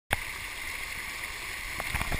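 Steady hiss of water running down a pool water slide. There is a sharp click at the very start and a couple of light knocks near the end, from the camera being handled.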